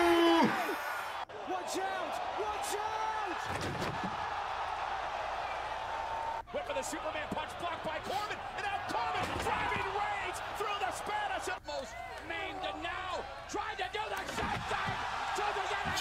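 Wrestling TV broadcast audio: commentators calling the action over a noisy arena crowd, with a heavy crash a few seconds in as a wrestler is driven through an announce table.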